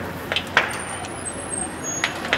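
Cars burning, with a few sharp pops in the first second, over the steady running of a fire engine.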